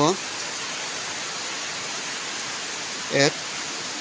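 A steady, even hiss of background noise. Near the end a voice says "eight".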